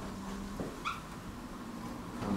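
A single short, high squeak of a marker on a whiteboard a little under a second in, over a faint steady room hum.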